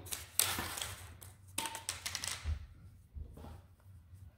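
Paper label (ball band) being pulled off a skein of worsted wool yarn: two bursts of paper rustling, about half a second in and again about a second and a half in, then quieter handling.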